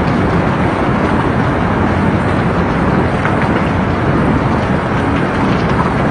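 Steady, loud rushing of a fast, muddy floodwater torrent.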